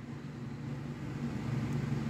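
A steady low background hum that slowly grows louder.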